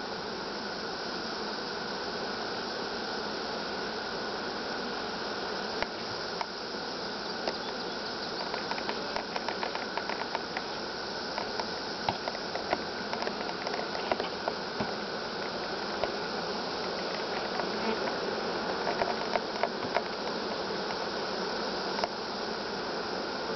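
A honeybee colony buzzing steadily in a crowded open hive. Scattered light ticks and taps come through the middle and later part.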